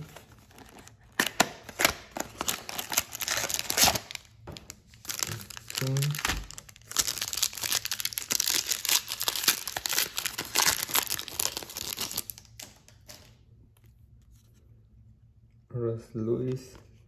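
Foil trading-card packs and box wrapping being torn open and crinkled by hand: a dense run of crackling, tearing rustles that stops about three seconds before the end.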